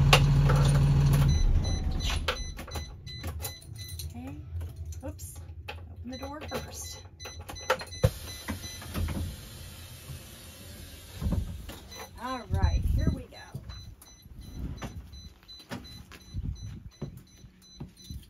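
School bus engine idling, then shut off a little over a second in. After it stops, scattered clicks and knocks come from around the driver's seat.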